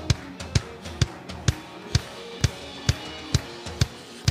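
Live band playing an instrumental groove: a drum kit keeps a steady beat of about two strong hits a second, over held bass and chord notes.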